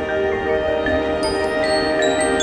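Marching band music led by the front ensemble's mallet percussion, ringing out in held notes and chords, with high bell-like tones above.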